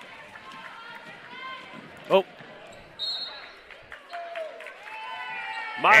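Basketball game in a gym: a ball dribbling on the hardwood court under the chatter of a crowd. There is a brief high squeak about three seconds in, and the crowd's voices rise over the last second or so.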